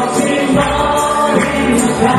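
Live band playing a Nepali Christian worship song: singing voices over electric guitar, bass guitar, keys, drums and tambourine.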